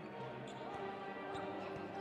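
Quiet basketball court sound during live play: the ball bouncing and a few faint sneaker squeaks on the hardwood, with low music underneath.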